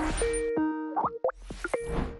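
A short TV graphics sting: a whoosh, then a run of short electronic notes and blips, and a second whoosh near the end.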